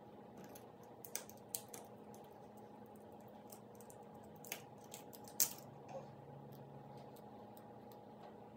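Small clicks and scrapes of metal scissor tips prying eyeshadow pans out of a plastic palette, the glue under them softened so the pans lift. The clicks are scattered and light, the loudest about five and a half seconds in, over a faint steady hum.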